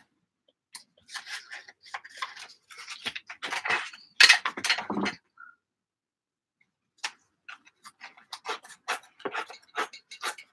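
Sheets of paper being handled on an art journal page: a run of short paper rustles and scrapes, pausing for about two seconds in the middle, then starting again as the paper is worked against a ruler.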